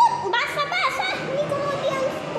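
Television cartoon soundtrack: very high-pitched voices sliding up and down in pitch.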